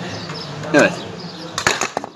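A few quick sharp metal clinks near the end, from a hand tool coming off the scooter's clutch nut, over a low steady hum.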